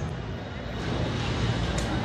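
Steady outdoor background noise at a gathering: an even low rumble and hiss, with faint voices.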